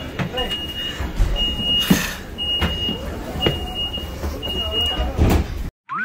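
Electronic warning beeper sounding a steady high tone about once a second, each beep about half a second long, over a low vehicle rumble; the beeping stops shortly before the end.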